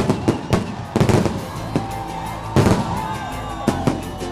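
Aerial fireworks display: a rapid, uneven series of bangs and crackles, the loudest about a second in and again at about two and a half seconds, with music playing underneath.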